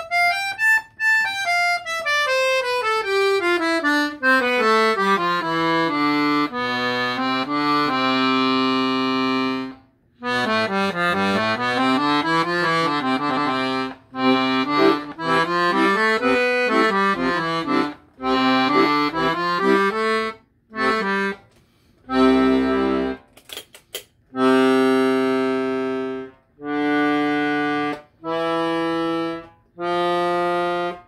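Salanti two-reed piano accordion with handmade reeds, played on the master register: a quick rising run, then a scale falling step by step, a held chord, running passages up and down, and short separated chords near the end.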